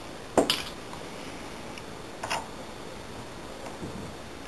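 Small metallic clicks and taps of lock picks working inside a TESA T60 euro-profile brass lock cylinder: a sharp cluster about half a second in, a softer one about two seconds in and a faint tick near the end, over a steady low hiss.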